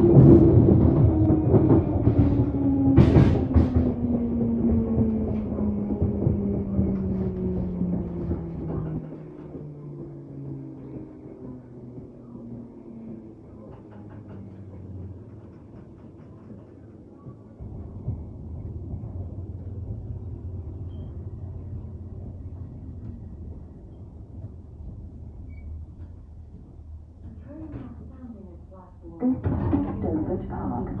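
London Underground 1972 tube stock's traction motors whining and falling steadily in pitch as the train brakes to a stop, with a sharp clunk about three seconds in. The train then stands with a quieter low rumble that steps up a little about halfway through.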